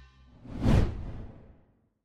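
Whoosh transition sound effect: a single rushing swell that peaks a little under a second in and fades away, following the faint tail of the intro music.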